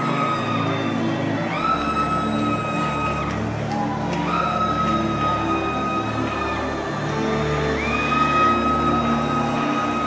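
Slow background music of held chords, with a high sustained note that moves to a new pitch every two to three seconds, sliding up slightly into each one.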